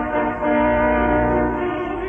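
Opera orchestra holding a sustained chord with the brass, trombones among them, prominent, in a muffled old live recording with no treble.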